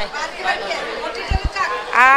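Indistinct chatter of several voices in a busy market, quieter than the close speech either side. Two short, dull low knocks come about one and a half seconds in.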